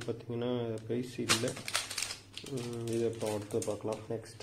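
A person's voice talking, with the crinkle and clicks of a clear plastic wrapper and a notebook being handled and set down around the middle.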